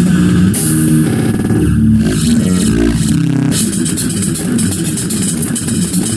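Instrumental doom-sludge metal: held low bass notes stepping from pitch to pitch over drums, turning into a denser, busier passage with many quick drum and cymbal strokes about halfway through.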